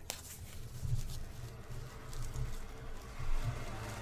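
Quiet handling sounds of fabric and a card viewfinder being moved over a cutting mat, with irregular dull low bumps.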